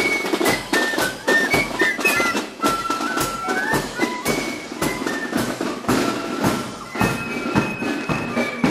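Military marching band of fifes and drums playing a march: a high, quick fife melody over a steady drumbeat.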